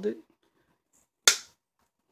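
Wire cutters snapping through a wooden popsicle stick: one sharp crack about a second and a quarter in, dying away quickly.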